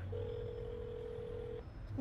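A single steady electronic telephone tone, held about a second and a half, heard over a phone line with a low hum beneath.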